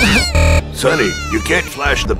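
A series of high, wailing cries that rise and fall in pitch, over background music. A short, loud low blast cuts in about a third of a second in.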